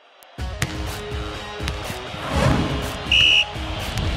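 Television sports-segment intro theme music, an ident jingle, starting after a brief gap. A short, loud, high-pitched tone sounds a little after three seconds in.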